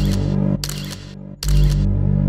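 Camera-shutter click sound effects, three sharp clicks about three-quarters of a second apart, over a steady low synth drone.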